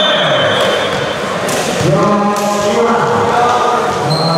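Several voices chanting and shouting together in a large hall, as a volleyball team celebrates a won point, with a held, sung-out call about two seconds in.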